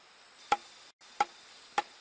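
Knife chopping a snake's body into pieces, three sharp chops about two-thirds of a second apart.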